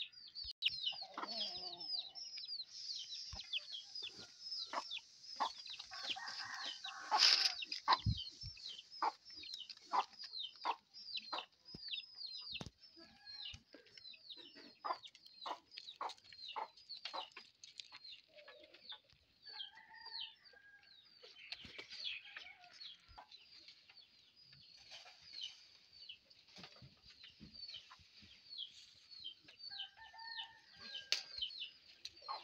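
Chicks peeping, a dense run of short, high, falling peeps several times a second, with a few lower hen clucks now and then. A loud sharp knock comes about seven seconds in and is the loudest sound.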